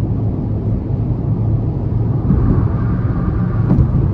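Steady in-cabin drone of a 2021 Kia Rio LX at highway speed: its 1.6-litre non-turbo four-cylinder engine held at higher revs in sport mode, mixed with tyre and road noise. A faint thin whine joins about halfway through.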